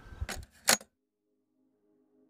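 Handling noise from a swinging handheld camera: a low thump and then two sharp clicks, the second the loudest, in the first second. The sound then cuts off to silence.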